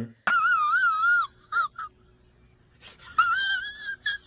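A man's high-pitched, wavering falsetto wail in two drawn-out stretches about two seconds apart, with two short squeaks between them; the second stretch sits slightly higher.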